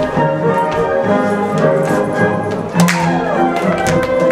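Instrumental Polish folk dance music playing, with many sharp taps through it and a quick falling run about three seconds in.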